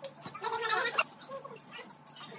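A short burst of a person's voice at a dinner table, ending in a sharp click about a second in, then fainter talk.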